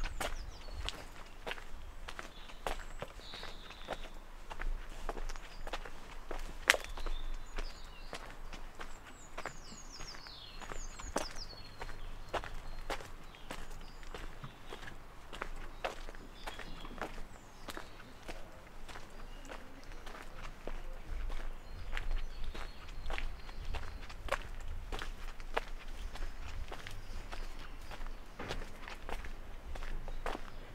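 Footsteps crunching on a gravel path at a steady walking pace.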